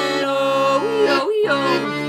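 Titan piano accordion playing sustained chords under a sung melody that glides in pitch. The accordion's low notes break off briefly just past a second in, then come back.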